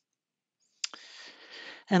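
Dead silence, then a single sharp click just under a second in, followed by a soft hiss of breath on a headset microphone as the man draws breath before speaking again.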